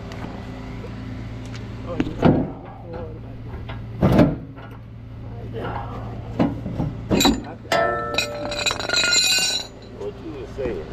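Steel tow hooks and chain clinking and knocking as they are unhooked from a car's front wheel area. A few sharp knocks come first, then a ringing metallic rattle near the end, over a steady low hum.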